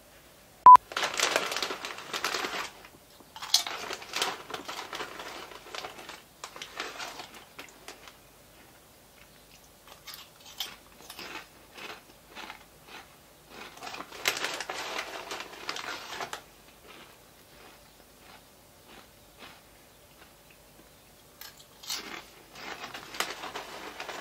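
Crinkling of a plastic snack packet and crunchy chewing, in several spells of rustling with small clicks between. A short, sharp beep sounds about a second in.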